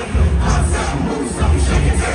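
Live hip-hop music played loud over an arena sound system, with a heavy bass beat and the crowd shouting along.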